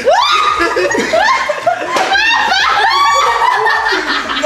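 A group of people laughing and shrieking loudly, with one short sharp smack about two seconds in.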